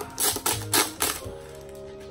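A vinyl LP jacket being handled on a table: a quick run of about four rustles and knocks in the first second or so, then a quieter stretch.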